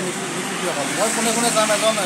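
Speech: a man talking, over a steady background noise.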